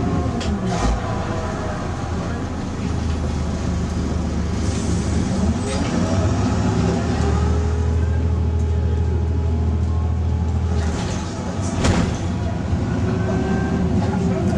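Volvo B6 LE bus's six-cylinder diesel engine heard from inside the saloon while the bus is under way, its drone rising and falling in pitch as it pulls through the gears. A sharp knock sounds near the end.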